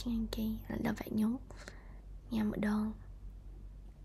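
A woman speaking softly in two short bursts, over a steady low hum.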